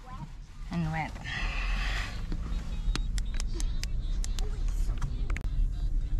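A car's low, steady engine and road rumble heard from inside the cabin, setting in about a second and a half in as the car moves off, with a short rushing hiss just before it and scattered sharp ticks through the second half. A voice says a word about a second in.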